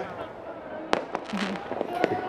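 Fireworks going off: one sharp bang about a second in, followed by a few smaller pops.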